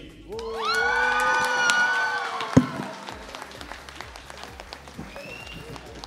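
Audience applauding and cheering, opening with one long held high note that lasts about two seconds.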